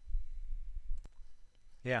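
A low muffled rumble for about a second, ending in a single sharp click of a computer mouse about a second in.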